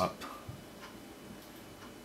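Quiet room tone with a few faint, short ticks.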